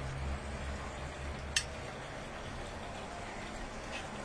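Quiet background with a low steady hum that fades about halfway through, and one short light clink about one and a half seconds in: a metal fork touching the dishes as fried meatballs are served onto a plate.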